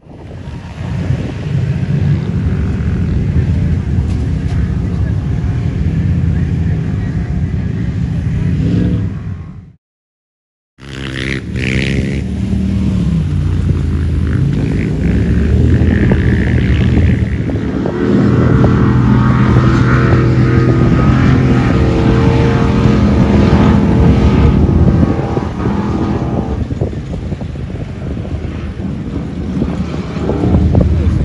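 Off-road vehicle engines running and revving as the rigs drive past on sand. The sound cuts out completely for about a second near the middle, then resumes louder.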